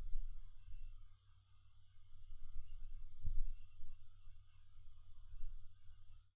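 Room tone between words: a faint, steady low hum in the microphone with a thin high whine, and one soft low bump a little after three seconds in.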